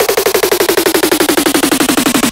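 Dubstep track: one synth note repeated in a rapid stutter, about sixteen hits a second, sliding steadily down in pitch.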